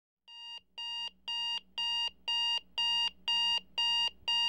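Electronic alarm clock beeping: a steady run of identical short, high beeps, about two a second, starting a moment in and growing a little louder over the first few beeps.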